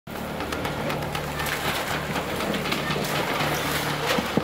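A large building fire crackling and popping over a steady rushing noise as the roof of a furniture warehouse burns, with a faint low hum underneath.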